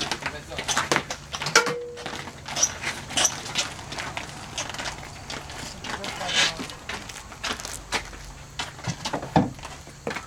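Indistinct talk among baseball players, broken by scattered short clicks and knocks.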